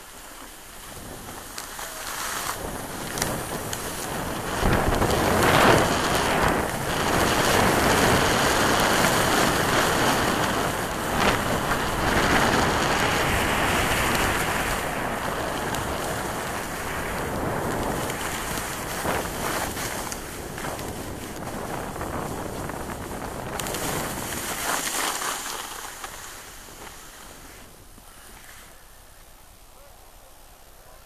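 Wind rushing over the microphone, with skis sliding on packed snow, while skiing downhill. The noise builds over the first few seconds, stays loud for most of the run, and dies down a few seconds before the end.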